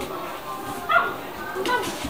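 A poodle puppy gives a short, high yip about a second in and another brief sound near the end, over people talking in the background.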